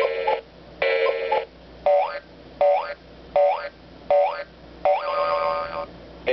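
Nickelodeon Time Blaster alarm clock playing one of its electronic alarm sound effects through its small speaker: two short horn-like tones, then four quick rising sweeps, then a longer tone near the end.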